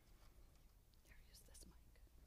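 Near silence with faint whispered speech near the microphone.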